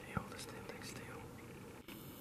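Hushed whispering, with one sharp click just after the start.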